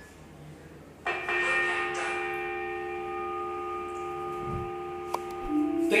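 Workout-timer bell chime struck once about a second in, marking the end of the timed stretch; it rings on as several steady tones and slowly fades.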